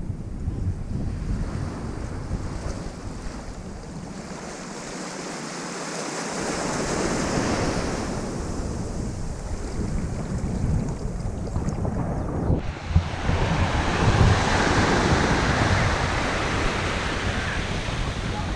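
Small waves washing onto a sandy shore, swelling and easing, with wind buffeting the microphone. The sound changes abruptly about two-thirds of the way through and grows a little louder.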